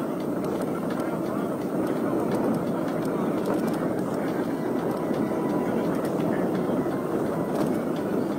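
Steady wind noise buffeting the camera microphone on a moving mountain bike, with tyres rolling over a dirt trail and faint scattered clicks and rattles from the bike.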